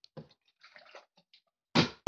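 Water sloshing in a partly filled plastic water bottle as it is flipped, then a loud thud near the end as the bottle hits the table on a missed landing.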